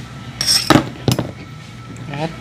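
A metal kitchen knife set down on a plastic cutting board: a clink with a brief high ring about half a second in, followed by a couple of light taps.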